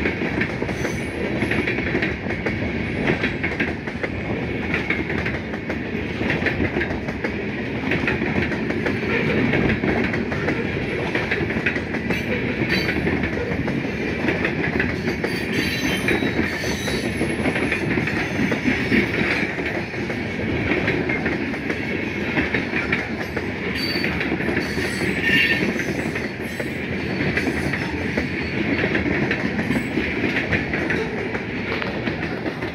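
Loaded covered hopper cars of a grain train rolling past, a steady rumble and clatter of steel wheels on the rails. A few brief, faint wheel squeals come through now and then.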